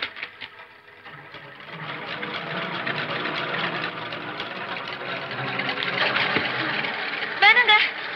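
A dense, even sound effect on the film soundtrack, swelling in loudness from about a second in and holding steady. A short cry with gliding pitch comes near the end.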